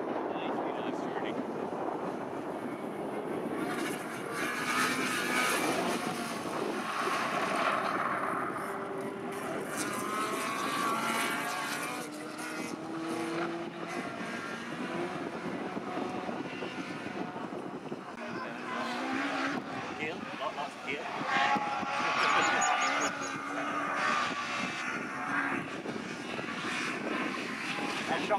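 Racing cars' engines running hard as they lap the circuit, the engine note rising and falling.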